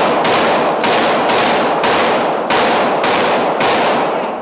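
Glock 19C compensated 9mm pistol firing about seven shots in steady succession, roughly two a second, each shot echoing heavily off the walls of an indoor range.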